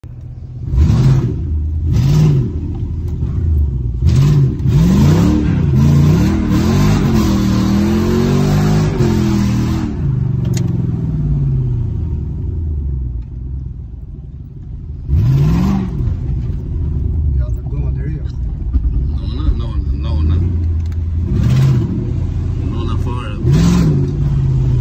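Mercedes-Benz M113 5.0-litre V8 heard from inside the cabin, revving hard: two sharp throttle blips near the start, then several seconds of revs rising and falling. After that it runs more evenly, with more sharp blips about two-thirds of the way through and twice near the end.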